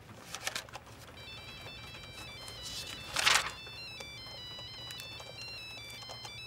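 Cell phone ringtone playing a beeping electronic melody of short stepped notes, starting about a second in and ringing throughout. There are a few clicks near the start, and a short burst of noise about three seconds in is the loudest moment.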